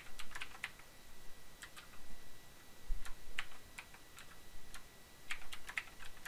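Typing on a computer keyboard: key clicks come in several short runs with brief pauses between them.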